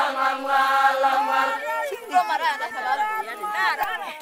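A group of voices chanting together on a long held note, which breaks off about halfway through into several people talking at once.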